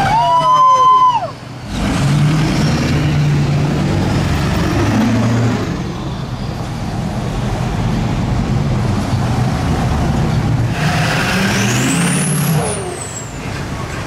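Pickup truck engines driving past on the street, a low rumble that rises and falls. It opens with a loud pitched horn-like tone that holds for about a second and then drops in pitch. A high whistle glides up and back down near the end.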